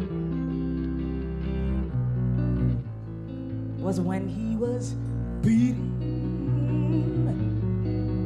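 Live jazz band playing: electric guitar chords over low, held upright bass notes, with a woman's voice singing briefly in the middle.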